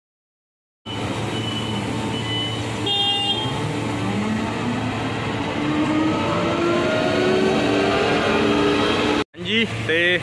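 Claas Jaguar forage harvester's diesel engine running, its pitch climbing slowly as it revs up, with a few short high beeps in the first few seconds. The sound cuts off suddenly near the end.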